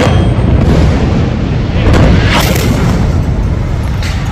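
Loud, deep booming rumble of explosions, swelling about two seconds in.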